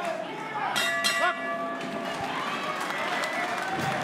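Boxing ring bell struck to end the round: a metallic ring about a second in whose tone fades over a second or two, over steady arena crowd noise.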